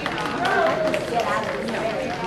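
Indistinct voices of several people talking in a large hall.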